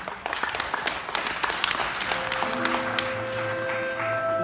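Audience applauding, the dense clapping thinning out as a grand piano begins the song's introduction about two seconds in.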